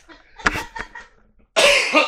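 A man coughing: a short burst about half a second in, then a loud, harsh cough near the end.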